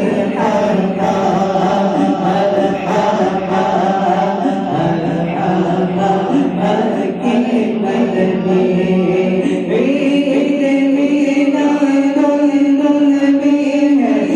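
Many voices chanting a naat, an Islamic devotional praise song, together on long held notes.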